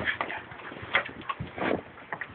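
Handling noise from the camera being moved about: a few light, irregular knocks and clicks with soft rustling between them.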